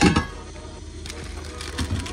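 A brief clatter of objects being handled at the start, then a low steady hum with a soft knock near the end.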